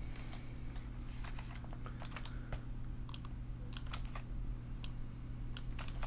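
Typing on a computer keyboard: irregular, separate key taps as single characters in the code are selected and retyped, over a steady low hum.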